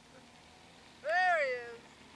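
One drawn-out high call about a second in, rising and then falling in pitch, shaped like a cat's meow.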